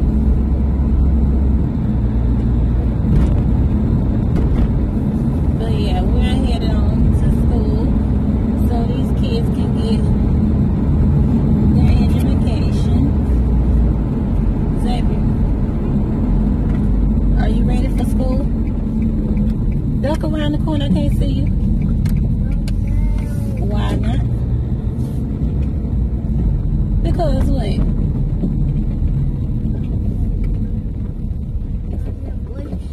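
Car cabin noise while driving: a steady low rumble of engine and road. Short snatches of talk come through several times.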